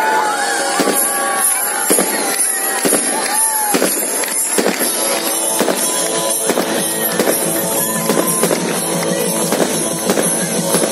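Aerial fireworks going off overhead in a dense string of sharp bangs and crackles, with music playing underneath.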